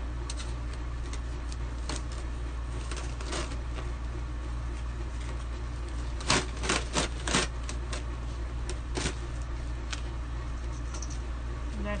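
Handling noise of a chalk-art mesh transfer sheet being peeled up off a painted surface: scattered clicks and crinkles, bunched together about six to seven and a half seconds in, over a steady low hum.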